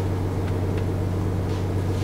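A Saab's engine idling: a steady, even low hum heard from inside the cabin.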